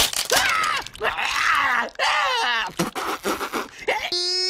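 A cartoon character's voice crying out and groaning in several strained, wordless yells, after a short sharp crack at the very start.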